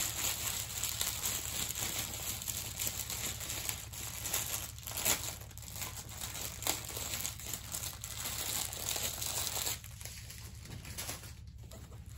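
Clear plastic protective film on a diamond painting canvas crinkling and crackling as the canvas is handled and moved. The crinkling eases off in the last couple of seconds.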